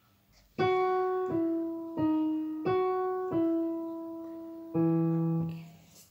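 Yamaha Clavinova digital piano playing a short run of six single notes one after another, each struck and left to fade. It serves as a pitch reference for a violin passage. The last note has a lower note sounding with it and is released near the end.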